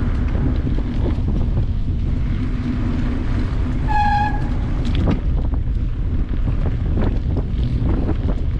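Wind buffeting the microphone while riding, a dense low rumble throughout. About halfway through comes one brief beep of about half a second.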